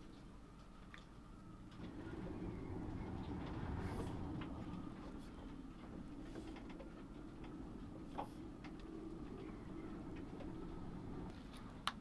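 Faint low background rumble with a few light clicks, and a sharper click near the end as the Vaavud Sleipnir's metal mini-jack plug is pushed into an iPhone's headphone socket.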